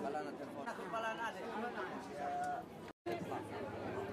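Background chatter of a crowd, several voices talking at once at moderate level, with a brief total dropout just before three seconds in.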